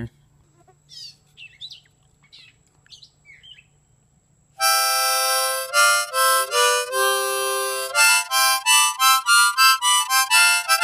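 Faint bird chirps, then about halfway through a 10-hole Easttop 008K blues harmonica in the key of C starts playing loudly: one long held chord followed by a quick run of short chords.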